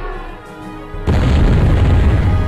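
Background music, then a sudden loud, deep boom about a second in that rumbles on for more than a second.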